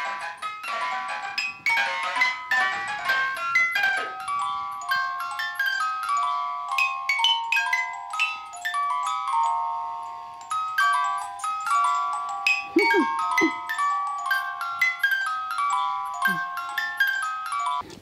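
Wooden carousel music box playing a tinkling melody of quick, sharply plucked high notes that ring briefly and overlap.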